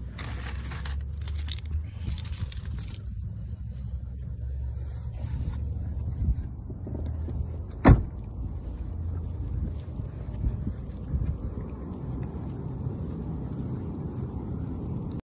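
Rustling and shuffling while getting out of a car, then footsteps on asphalt, all over a steady low rumble of a hand-held phone's microphone being carried. A single sharp knock about eight seconds in is the loudest sound.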